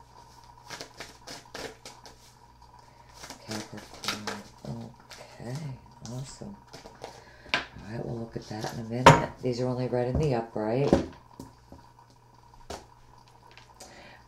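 Tarot cards being drawn from the deck and laid on the table: a scatter of light clicks and taps of card stock, with low vocal sounds in between.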